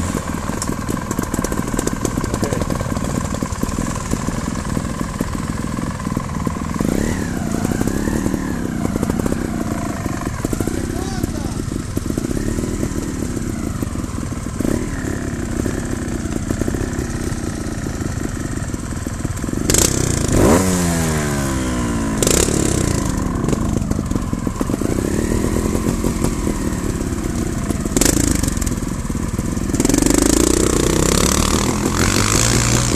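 Trials motorcycle engines running close by, rising and falling in pitch as the throttles are blipped several times, with stronger revving near the middle and again later on as the bikes ahead climb a slope.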